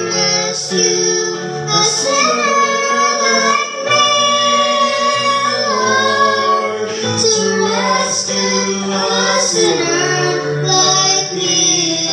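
A young girl singing a gospel song into a microphone with long held notes, over steady instrumental accompaniment.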